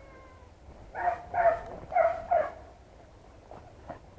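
Hunting beagles giving four short, high yelps in quick succession, starting about a second in.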